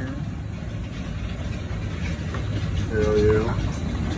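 A steady low rumble of machinery runs throughout. About three seconds in, a short pitched sound like a brief voice cuts across it.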